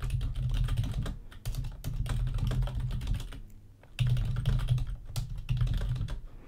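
Rapid typing on a computer keyboard: a quick run of key clicks with a short pause about two-thirds of the way through.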